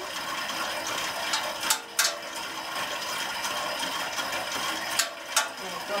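Spinning bike's flywheel and drivetrain whirring steadily as it is pedalled at an easy rest pace, with a few sharp clicks from the mechanism.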